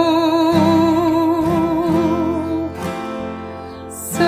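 Acoustic guitar accompaniment of a slow folk ballad, with chords struck under a long held note with vibrato. The music softens about three seconds in, then swells again at the end.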